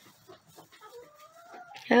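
Young chickens scratching and pecking in straw bedding: light rustling and ticking, with one soft, thin call rising slowly in pitch about a second in.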